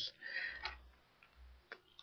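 Quiet pause with a faint low hum and two small clicks, one about two-thirds of a second in and one near the end.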